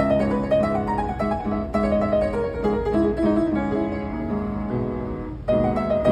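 Upright piano played solo: a melody of changing notes over held chords, with a brief break about five and a half seconds in before the next phrase comes in loudly.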